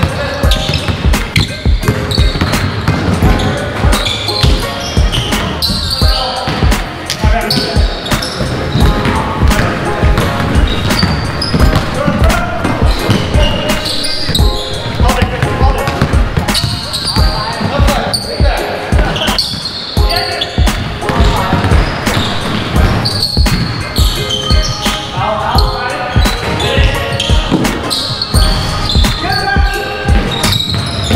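A basketball dribbled on a hardwood gym floor, with sneakers squeaking and players' indistinct shouts, all echoing in a large gym.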